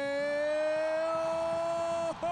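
A football commentator's voice holding one long, slightly rising note without a break, the drawn-out shout of a goal call.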